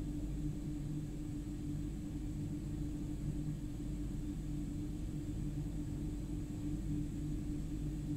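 A steady low droning hum with a held mid-low tone over a deeper rumble, unchanging throughout.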